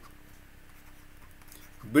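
Faint scratching of a stylus writing on a drawing tablet, over a steady faint hum. A man's voice starts near the end.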